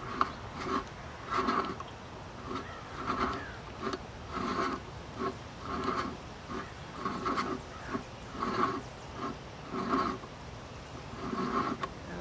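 Vintage Lisle cylinder ridge reamer turned by a ratchet, its cutter scraping dry metal from a cast iron cylinder bore in short rasping strokes, about two a second. It is cutting away the wear ridge at the top of the bore.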